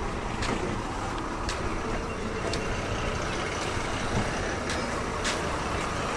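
Diesel bus engines running at a busy bus stand, a steady low rumble with a few faint clicks on top.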